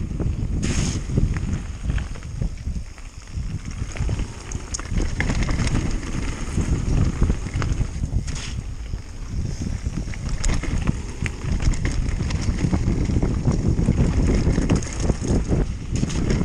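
Wind buffeting the microphone of a camera riding on a mountain bike, over the rolling crunch of knobbly tyres on loose gravel and slate, with many small clicks and rattles from stones and the bike. Brief hissing spurts come about a second in and again about eight seconds in.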